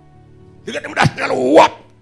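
A man's voice through a microphone imitating a dog, a loud bark-like call lasting about a second, over a steady held keyboard chord.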